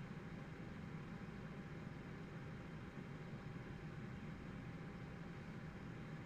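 Faint, steady background hiss and room tone from a live-stream microphone, with no kick or other event playing.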